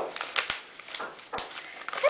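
Paper pages of a thick, battered journal rustling as it is handled and leafed through, with a couple of short knocks, one at the start and one about a second and a half in.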